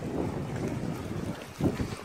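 Wind buffeting the microphone: a steady, low rumbling noise with no clear pattern.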